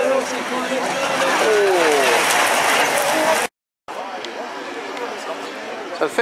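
Rallycross cars racing past, their engines and tyres making a dense, loud noise, with an engine note falling in pitch about a second and a half in. A voice is heard over it. The sound cuts out completely for a moment a little past halfway, then resumes quieter.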